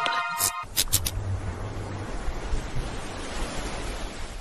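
The tail of a short musical jingle cuts off with a few quick clicks, then a steady rush of sea waves with a low rumble beneath.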